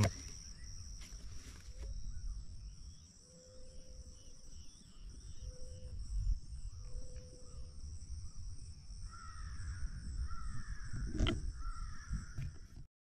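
Outdoor ambience: a steady high drone of crickets over a low rumble, with a crow cawing several times near the end and a single sharp click just before the end.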